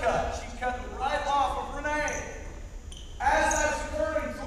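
Speech: a person talking in a large, echoing gymnasium, with a short pause about three seconds in.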